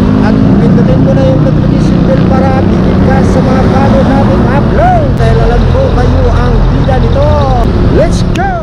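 Loud, steady rumble of road traffic on a busy city avenue, with a person's voice talking over it.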